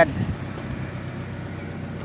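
Steady background noise with a faint low hum, as from distant traffic or machinery, in a pause between a man's words.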